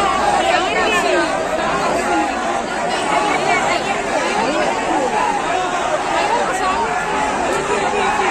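A large crowd: many voices talking and calling out at once, overlapping into a steady din.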